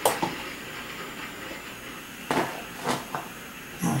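Hand-held trigger spray bottle spritzing water onto wet watercolour paper so the paint runs: a few short hissing squirts, one at the start and a few more about two to three seconds later.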